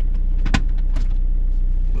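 Opel Zafira's 2.0 DTI diesel engine idling steadily, heard from inside the cabin, with one sharp knock about halfway through and a fainter click shortly after.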